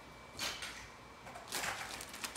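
Soft plastic baby-wipes packet rustling and crinkling as wipes are pulled from it, in two short bursts: a brief one about half a second in and a longer one from about a second and a half.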